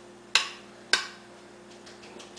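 A metal spoon clinking twice against a glass Pyrex baking dish while spreading pudding: two sharp clinks with a brief ring, about half a second apart.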